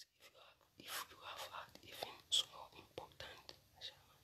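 A man whispering quietly in short, faint broken phrases.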